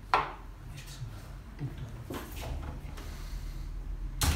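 A wooden hotel room door being handled and pulled shut, with a sharp knock just after the start and softer clicks and rubbing later, over a steady low hum.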